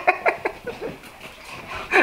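Two dogs playing together, making a quick run of short breathy sounds, about five or six a second, that fade out after about a second.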